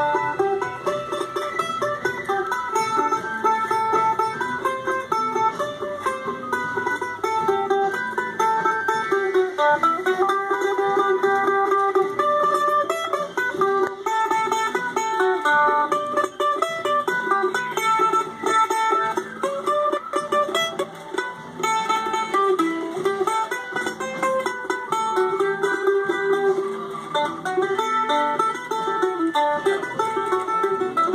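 Solo acoustic mandolin played with a pick: a continuous melody of quick picked notes. The instrument is a refinished teardrop-bodied Gibson A-style mandolin from about 1914 to 1918, thought to be an A-1.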